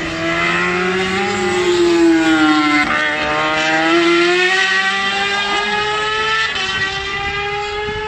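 Racing motorcycle engine at full song as the bike exits a corner and pulls away. Its pitch rises, dips about three seconds in, then climbs steadily through the rest.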